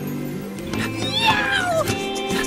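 A cat's long meow, falling in pitch, about a second in, heard over background music.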